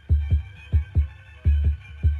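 Heartbeat sound effect: paired low 'lub-dub' thumps repeating about every two-thirds of a second, over a faint steady musical drone.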